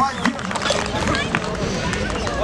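Indistinct voices of spectators talking around the fight cage, with a few faint knocks.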